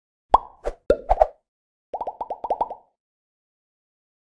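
Cartoon-style plop sound effects for an animated logo: a few short popping blips in the first second or so, then a quick, even run of about eight more. Each plop is a brief blip that sweeps up in pitch, like a water drop.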